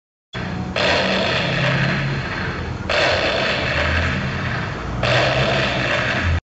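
Intro sound effect for an animated logo: a loud, noisy roar that starts after a moment of silence and swells in three surges about two seconds apart.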